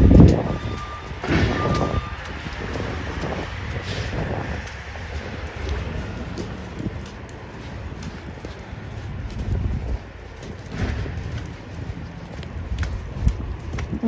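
Traffic on a wet, slushy street: the rumble and tyre hiss of cars and trucks passing, swelling as vehicles go by. A short run of high electronic beeps sounds in the first second or two.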